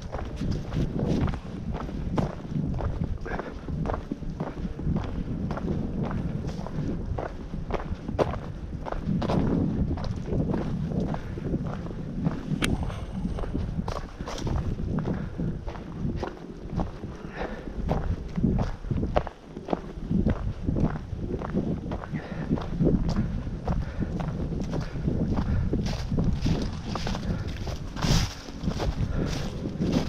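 Hiker's footsteps on a dirt trail covered in dry leaves, crunching at a steady walking pace, with low wind rumble on the microphone underneath.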